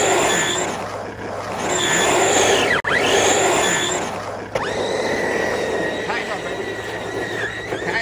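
Brushless electric motor of a Redcat Kaiju RC monster truck whining as it is throttled hard and drifted on wet pavement, rising and falling in pitch in short bursts, then holding a steadier whine from about halfway, over the hiss of tyres on wet concrete.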